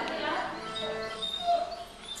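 A dog whimpering: a few short, thin whines at different pitches, the loudest about one and a half seconds in.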